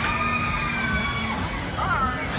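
Riders on a swinging pirate-ship ride screaming, several long held screams overlapping as the boat swings down through its arc, over crowd chatter.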